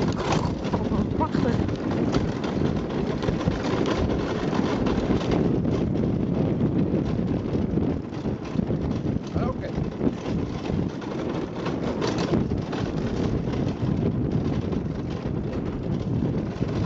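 Steady wind rushing over the microphone of a dog-drawn rig moving fast, with the rolling rumble of the rig on a dirt trail behind a running team of huskies.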